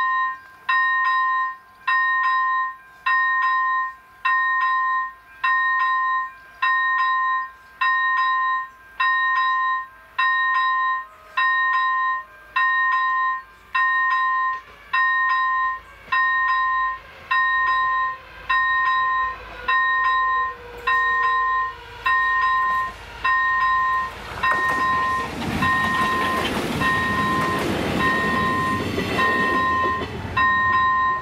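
Level-crossing warning bell ringing in an even electronic beep, about once a second, while a train approaches. The train's running noise builds from about twenty seconds in and grows loud over the last six seconds as it reaches the crossing.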